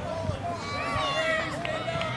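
Several voices from the sideline shouting and calling out over one another, too mixed to make out words, during play at a junior rugby league match.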